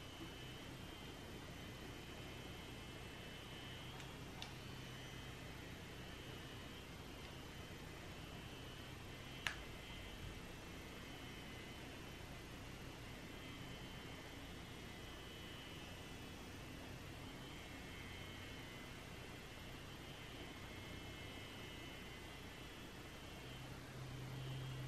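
Very faint room tone: a steady low hiss and hum, with a soft click about nine and a half seconds in.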